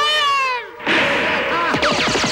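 Sci-fi ray-gun sound effects: a falling tone, then from about a second in a dense burst of zapping with many swooping whistles.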